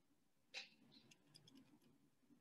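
Faint clicks in near silence: one sharper click about half a second in, then a run of small, quick ticks.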